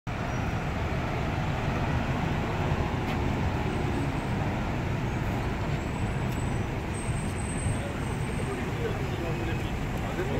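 Steady city street traffic noise: a continuous low rumble of road vehicles.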